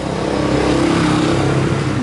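A loud motor running steadily, a pitched hum over a rasping noise.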